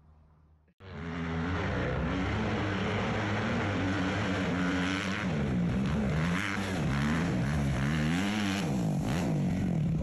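Dirt bike engine running hard, starting suddenly about a second in, its pitch rising and falling again and again as the throttle is worked.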